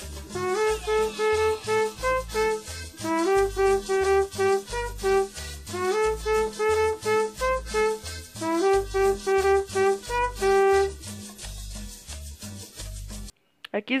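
Trumpet playing a second-trumpet part of short repeated notes over a recorded band track with a pulsing bass beat. The music cuts off suddenly near the end.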